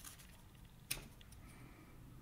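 Very quiet handling of a small laser-cut acrylic piece as a fingernail works at its protective paper backing, with one sharp click a little under a second in.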